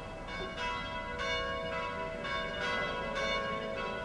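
Church bells ringing: a run of strikes, roughly two a second, each tone ringing on and overlapping the next.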